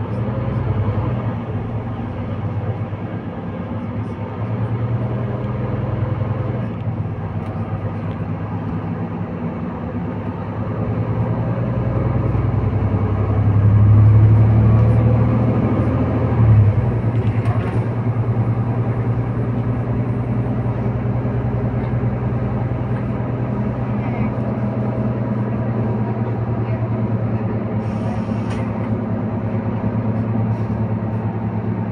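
Interior sound of a Mercedes-Benz Citaro C2 K city bus: the diesel engine and ZF EcoLife automatic gearbox hum steadily, building to a louder peak under acceleration a little before the middle, with a brief jump soon after as the gearbox changes, then running evenly at cruise.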